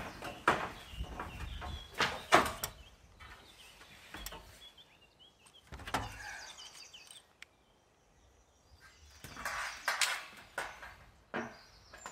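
Scattered sharp knocks and taps of a corrugated metal roofing sheet being handled and worked with a cordless drill, a quiet lull a little past halfway, then a busier stretch of knocking and working noise near the end.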